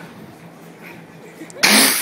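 A short, loud, breathy burst of laughter close to the microphone near the end, over faint background chatter.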